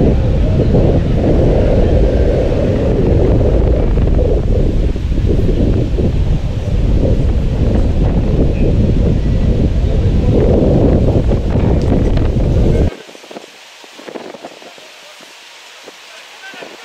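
Wind buffeting the camera microphone: a loud, uneven low rumble that cuts off suddenly about thirteen seconds in, leaving a much quieter outdoor background.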